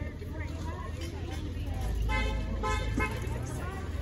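A car horn toots twice in quick succession, about two seconds in, over a low vehicle rumble.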